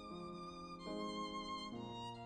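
Violin playing a slow melody in long bowed notes with vibrato, moving to a new note about every second.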